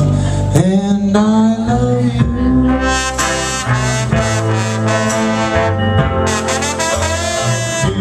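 A trombone playing a lead line in a live roots-rock band, sliding up into a note about half a second in, over bass and drums.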